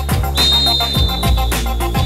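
Electronic music with a heavy, steady beat. Over it, a referee's whistle blows one long, high blast about a third of a second in.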